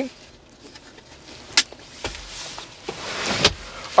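Plastic center-console trim being worked: a sharp click about a second and a half in, then a sliding, rubbing sound that builds for about a second and ends in another click, as a console lid and cover are closed and slid.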